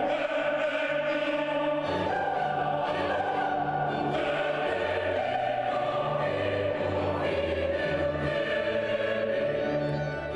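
Large mixed choir singing a slow piece in sustained chords, with upper voices held on top of long low bass notes.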